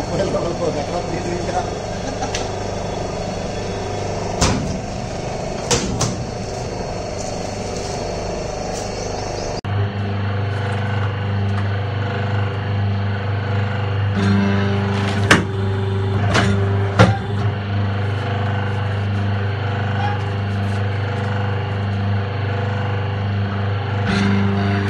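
Paper plate making machine running: a steady motor hum with sharp clicks and clanks from the press dies. About ten seconds in the sound changes abruptly to a louder, steadier low hum.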